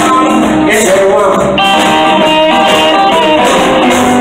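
Live band music: electric guitar playing over upright bass and drums, loud and steady.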